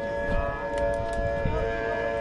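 Barbershop quartet of four men's voices holding a long chord in close harmony, the chord shifting slightly about three-quarters of the way through.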